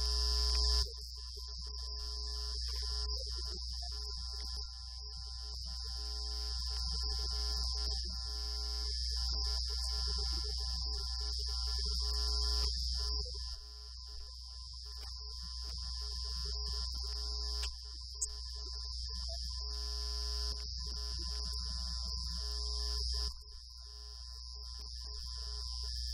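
A steady electrical hum with a high-pitched whine and several faint steady tones. It swells slowly and drops back abruptly several times, with one short click about 18 seconds in.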